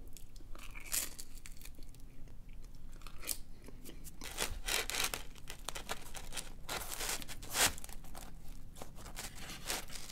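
Chewing on a piece of pepperoni flatbread pizza, and hands tearing a piece off the flatbread: a run of short, irregular crackly and tearing noises.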